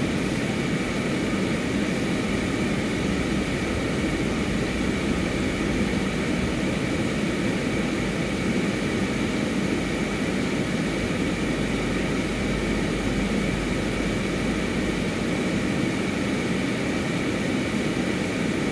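Steady background hum and hiss heard from inside a car with its engine running.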